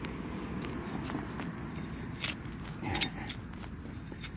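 Small hand digging tool cutting a plug through grass turf and roots: a steady low scraping and rustling, with a few sharp clicks.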